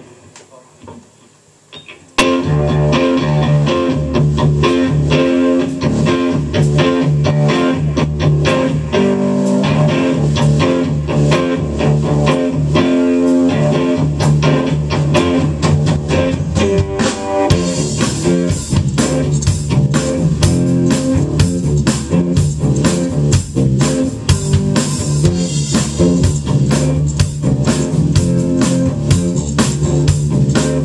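Live rock trio of electric guitar, bass guitar and drum kit playing an instrumental intro. The band comes in suddenly about two seconds in after a few faint clicks, and the sound grows fuller and brighter a little past halfway.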